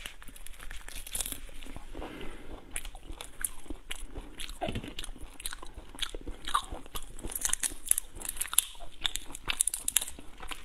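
Close-miked eating of soy-marinated prawns: shells cracking and peeling apart by hand and crunching between the teeth, a dense, irregular run of crackling clicks.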